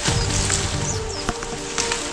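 Background music with low held notes that come in at the start.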